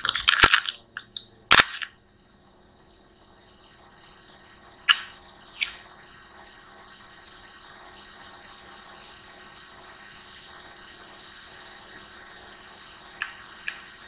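Computer mouse clicking: two sharp clicks in the first two seconds, two more about five seconds in, and a few faint ones near the end, over a low steady hiss.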